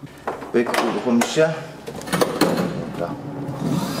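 A series of sharp plastic clicks and knocks from hands working the switches and controls of an electric scooter as it is switched on, mixed with some speech.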